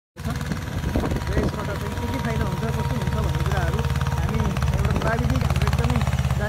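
Mahindra Jivo 245 DI mini tractor's two-cylinder diesel engine running steadily with a fast, even beat while pulling a five-disc harrow, with voices faintly over it.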